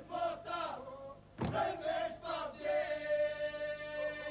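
Albanian men's folk group singing in Lab polyphony. A new phrase breaks in loudly about a second and a half in, then one note is held steady as a drone while other voices move above it.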